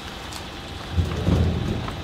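A large plastic sheet being carried and unfurled, giving a low rumbling rustle that starts about a second in and lasts about a second.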